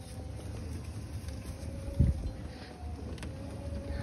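Small utility cart driving over grass, a steady low rumble with wind on the microphone; a single thump about halfway through.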